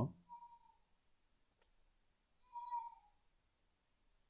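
Near-quiet room with one faint click, then a short pitched call about half a second long, dropping slightly at the end, about two and a half seconds in.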